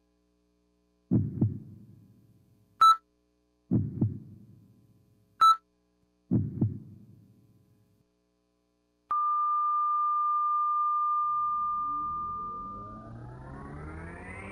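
Electronic sound-effect intro of a robot-themed dance routine's music track: three deep double thumps, like a heartbeat, each followed by a short high beep. Then a long steady beep holds for about four seconds while a rising sweep of tones builds near the end.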